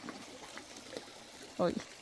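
Faint, even lapping of open lake water, then a single spoken word near the end.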